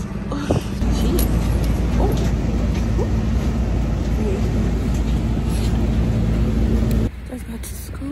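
City transit bus idling close by, a steady low engine rumble with a constant hum, which stops abruptly about seven seconds in, leaving quieter outdoor background.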